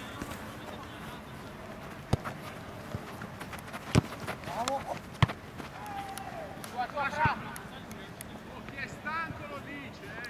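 Football (soccer) ball being kicked on an artificial-turf pitch: a few sharp thuds, the loudest about four seconds in, with short calls and shouts from players between them.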